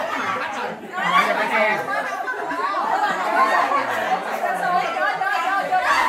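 Several people chattering and talking over one another.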